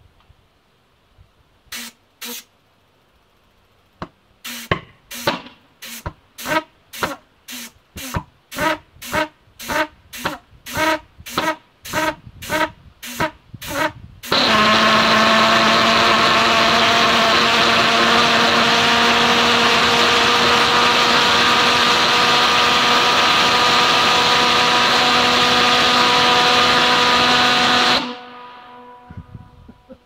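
HobbyKing hobby pulsejet starting up. It gives a couple of single pops, then a string of sharp pops about two a second as it is fed compressed air. About halfway through it catches into a continuous, very loud, steady-pitched drone. That drone runs for about fourteen seconds, then cuts off suddenly, and the echo off the surrounding mountains trails away.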